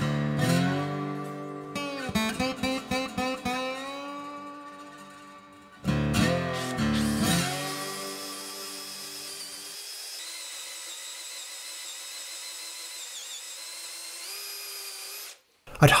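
Acoustic guitar music with strummed chords, then from about eight seconds an 18V cordless drill running steadily as a 40 mm Forstner bit bores into a red gum block, cutting off suddenly near the end.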